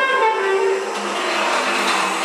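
Free-improvised jazz: an object rubbed across a snare drum head, amid sliding, moaning tones from saxophone and tuba. The sound grows denser and noisier about a second in.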